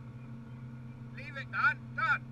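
Rally car engine idling steadily, heard from inside the cabin as a low hum. Near the end a person's voice cuts in briefly over it.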